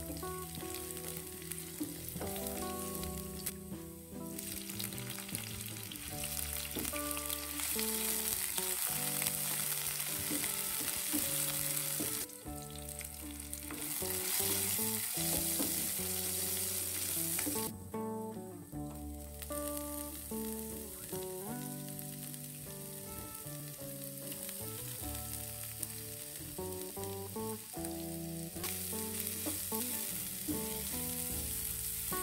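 Oil sizzling in a non-stick frying pan as shallots, garlic, lobster balls and pumpkin shoots are stir-fried and pushed around with a wooden spatula. The sizzle breaks off briefly three times, and background music with held, stepping notes plays underneath.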